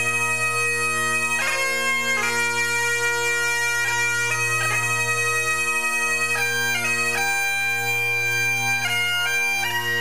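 Bagpipe music: a steady low drone under a melody that steps between held notes.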